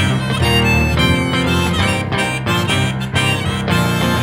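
Harmonica played from a neck rack, taking an instrumental break over hollow-body electric guitar and keyboard piano accompaniment.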